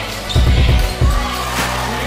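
Background music with a heavy bass beat: deep kick-drum thumps over sustained low bass notes, with a quick cluster of thumps in the first second.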